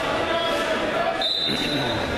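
Referee's whistle blown once, a short steady blast a little over a second in, starting the wrestling bout, over the chatter of voices in a large gym.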